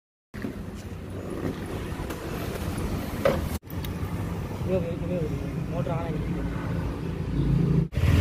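A Suzuki Gixxer SF 250's single-cylinder engine running, with wind rushing over the microphone while riding at speed. After a sudden break a few seconds in, the engine runs on at a standstill, with faint voices in the background.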